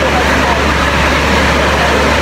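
Busy restaurant hubbub: many voices talking and laughing over one another, over a steady low rumble.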